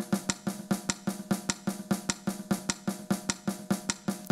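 A looped percussion rhythm from a Flash model of Brazilian swing, played over the hall's loudspeakers. A sharp high stroke falls about every 0.6 s with quicker strokes between, and the swing feel shifts as its slider is pushed toward fully ternary.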